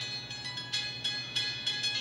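High, tinkly piano music: a quick run of short notes, several a second, over a faint steady hum.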